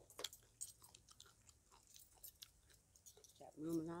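A person chewing a mouthful of papaya salad close to the microphone: faint, scattered small wet clicks and crunches. Speech begins near the end.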